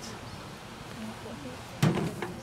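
Faint background of murmuring voices, with one sudden short thump near the end.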